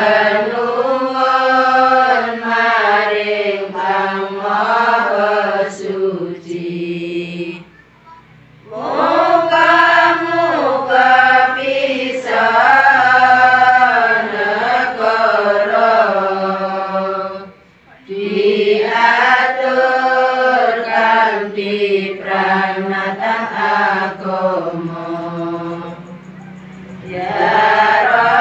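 Women chanting a song in unison, in long sung phrases with two short breaks, about eight and eighteen seconds in.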